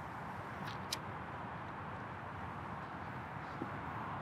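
Quiet outdoor shoreline ambience: a faint, steady low rush with one brief faint click about a second in.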